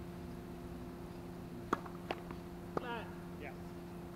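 Tennis serve on a hard court: three sharp knocks of the ball off the racket and the court about two seconds in, followed by a short high-pitched sound, over a steady low hum.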